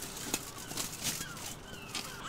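Plastic shrink-wrap crinkling and tearing as it is pulled off a cardboard box by hand, a dense run of small crackles.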